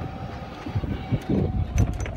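Golf cart driving over a fairway: a low rumble with uneven jolts, and a faint steady tone in the first second.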